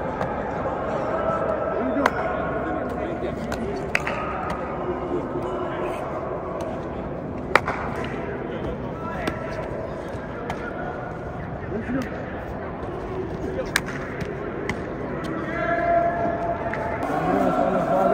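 Indistinct voices of players talking across a large indoor practice hall, rising near the end, broken by a handful of short sharp smacks, the loudest a little before halfway.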